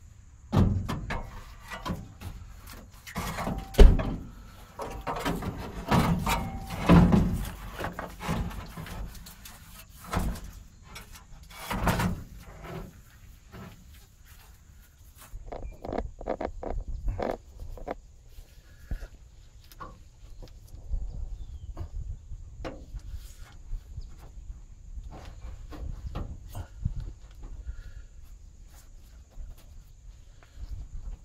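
Irregular knocks, clicks and scuffs of hand work on a truck's front end as a radiator hose and its band clamp are fitted. A cluster of louder knocks comes in the first dozen seconds, followed by sparser, quieter clicks.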